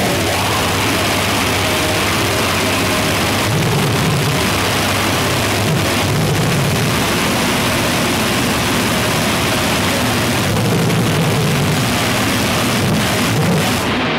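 Harsh noise music: a loud, unbroken wall of distorted noise with a churning low rumble underneath, of the gorenoise/cybergrind kind.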